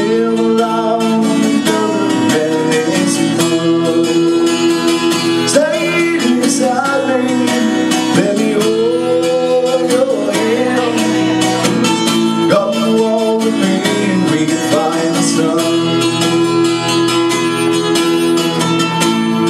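Acoustic guitar strummed steadily in a live solo song performance, with a man's voice singing over it.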